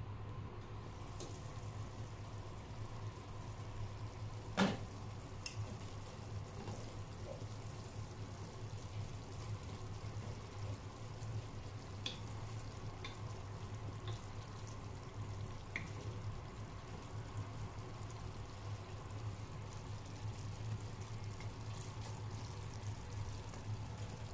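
Taro leaves simmering in coconut milk in a pot: a steady, soft bubbling over a low hum. There is one sharp click about four and a half seconds in, and a few faint ticks later.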